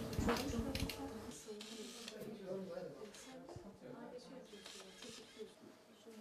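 Indistinct voices in a small room, louder in the first second and then faint, with a few sharp clicks near the start.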